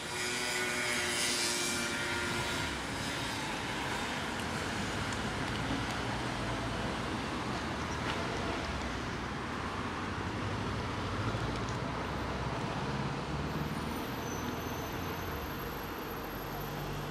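Steady street traffic noise from vehicles passing, a little louder in the first few seconds as one vehicle goes by.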